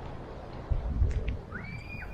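A brief low rumble, the loudest sound, in the middle, then a single bird call near the end that sweeps quickly upward and holds a high note.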